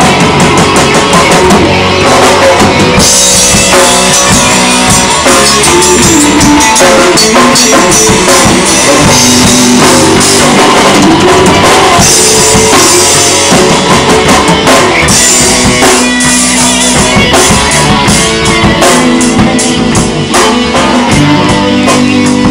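Loud rock music with a full drum kit and guitar playing steadily throughout.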